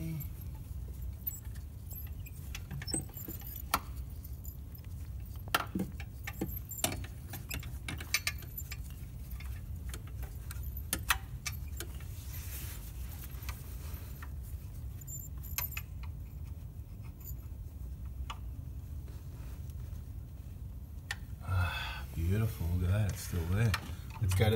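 Irregular small metallic clicks and clinks of a hand tool working a glow plug loose from the cylinder head of a Toyota 1KZ-TE 3.0 L diesel, over a steady low hum.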